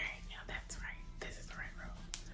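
A woman speaking softly, close to a whisper, at a low level.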